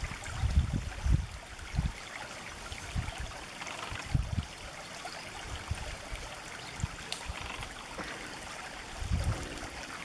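A shallow stream trickling and gurgling over stones, steady throughout. A few low bumps on the microphone are the loudest sounds, clustered in the first second or so and again near the end.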